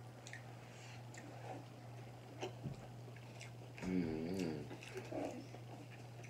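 Close-miked chewing and wet mouth clicks from someone eating sauce-dipped seafood-boil food such as boiled egg. About four seconds in there is a short hummed "mmm" of enjoyment, over a steady low hum.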